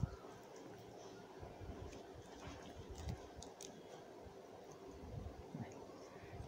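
Faint rustling and a few light clicks of fresh leaves being handled and folded around chutney, with a brief click at the very start.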